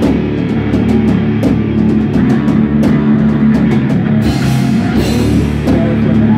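A rock band playing live in rehearsal: electric guitars over a drum kit, with regular drum and cymbal strokes.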